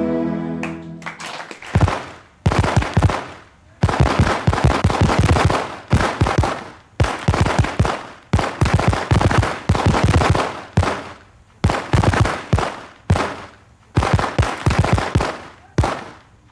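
Fireworks: a string of bursts of rapid, sharp crackling, about one burst a second, each dying away. This follows the last of a sung tune fading out in the first second.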